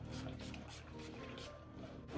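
Several short sprays from a pump spray bottle of body mist, over faint background music.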